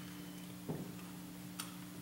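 Two faint clicks about a second apart over a steady low hum.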